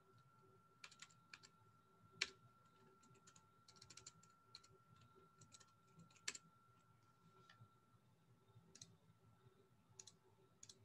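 Faint computer keyboard typing: scattered keystrokes with a quick run of keys near the middle and two sharper key presses.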